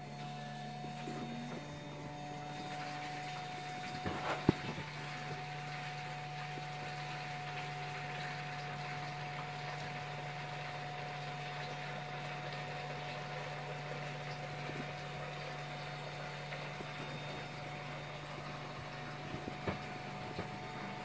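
Small electric transfer pump switched on and running steadily with a low hum, moving mead from the large tank through a filter and up a tube into a raised bucket. A few sharp knocks come about four seconds in.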